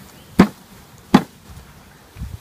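Two sharp knocks about three quarters of a second apart as a tree branch holding a honey bee swarm is struck to jar the cluster down into a box.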